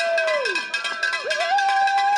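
Many handheld cowbells clanging rapidly all together, rung by the runners to mark a race start, with long rising-and-falling whoops of cheering over the clatter.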